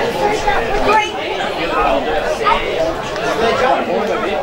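Overlapping chatter of several spectators talking at once near the microphone, with no single clear speaker.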